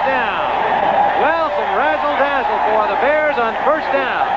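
Male television commentators talking over steady crowd noise in a football broadcast.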